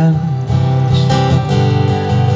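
Guitar strummed steadily as the accompaniment to a folk song, between sung lines.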